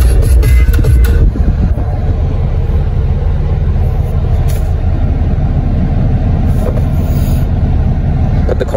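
Music playing from the car stereo over the steady low rumble of a car cabin, with a few loud knocks in the first second or so.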